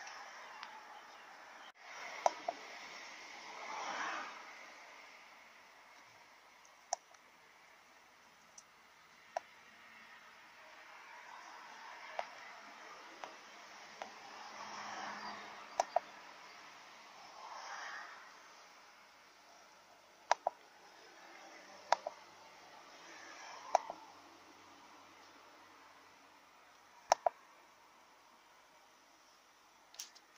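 Scattered single clicks from the keypad buttons of a Foxwell AutoMaster Pro handheld OBD scan tool as its menus are stepped through, some coming in quick pairs, with faint swells of background noise between them.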